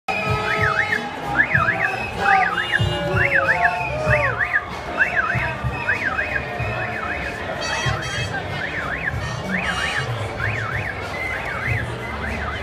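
An electronic siren or alarm warbling rapidly up and down, its pattern repeating about once a second, over crowd voices and low thumping.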